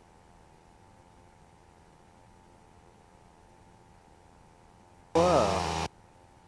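Near silence: the sound cuts off abruptly, leaving only a faint steady hum. A brief burst of a voice comes about five seconds in.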